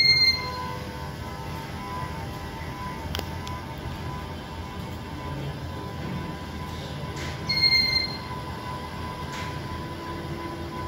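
Ceiling fan running under an ESP-based smart speed controller, a steady whirring hum with a thin steady tone. Two short electronic beeps sound, one right at the start and one about seven and a half seconds in.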